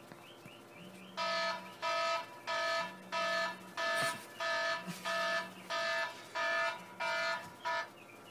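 Alarm beeping in a fast, even series of about ten pitched beeps, starting about a second in and stopping near the end, as if switched off. A lower buzz sounds under it about every two seconds.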